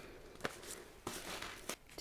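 Paper seed packets being laid down on a tabletop while being sorted into piles: three soft taps with faint paper rustling.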